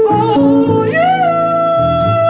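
Live jazz: a female vocalist singing a high note that swoops upward about a second in and is then held steady, over upright bass and electric archtop guitar.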